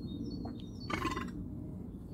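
Woodland ambience: a steady low background rumble with faint birds chirping, and one short, brighter bird call about a second in.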